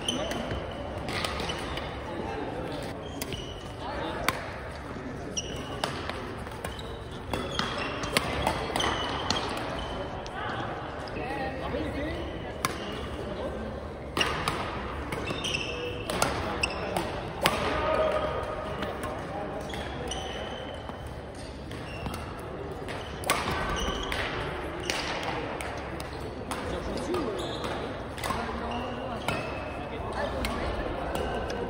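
Badminton rackets hitting a shuttlecock during singles rallies, sharp cracks at irregular intervals throughout, in a large echoing gymnasium with people talking on nearby courts.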